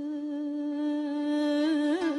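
A woman's voice holding one long, steady sung note in Uyghur muqam style, with a small ornamental turn in pitch near the end.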